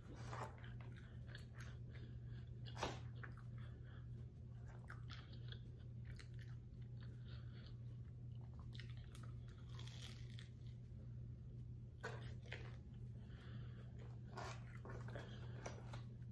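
Biting and chewing a crumb-coated Korean corn dog: irregular crunches throughout, a sharper crunch about three seconds in, over a steady low hum.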